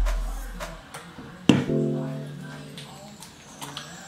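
Background music of plucked guitar: a chord strikes about a second and a half in and rings down slowly.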